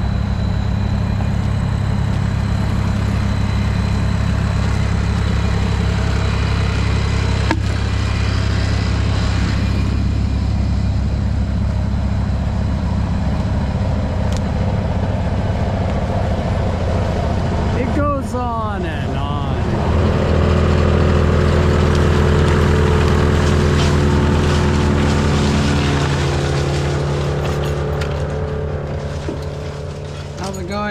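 A wood chipper's engine running steadily, a low, even drone. About two-thirds of the way through its note shifts and it grows slightly louder.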